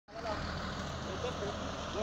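Diesel engine of an Iveco Eurocargo truck carrying a drilling rig, running steadily at low speed as the truck creeps forward.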